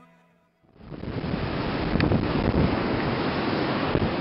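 Ocean surf and wind on the microphone: a steady rushing noise that sets in about a second in, after a moment of near silence.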